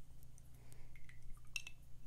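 Faint handling of a watercolour brush and painting tools: a few light taps, with a brief cluster of small clicks and a clink about one and a half seconds in, over a steady low hum.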